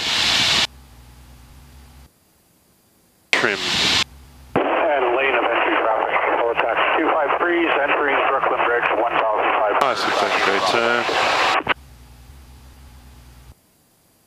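Voice chatter over a Cessna 172's aircraft radio, heard through the headset intercom: short bursts of voice, then a long thin-sounding transmission in the middle with more voice after it, and a faint steady hum in the gaps between.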